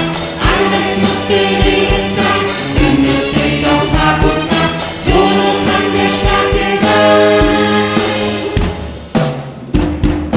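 A children's choir singing with a live pop band: a drum beat, bass and keyboards under the voices. Near the end the band drops out to a few sharp drum hits.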